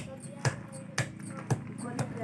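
Dried turmeric roots pounded with a handheld brick on a stone slab: sharp knocks about twice a second, with quieter voices underneath.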